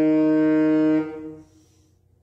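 Saxophone holding one long, steady note that fades away about a second and a half in, leaving a quiet pause before the next phrase.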